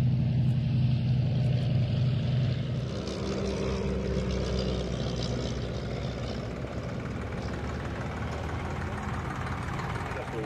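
Desoutter I monoplane's 115 hp Cirrus Hermes engine and propeller droning steadily in flight. The drone is loudest for about the first three seconds, then fainter as the aircraft moves off.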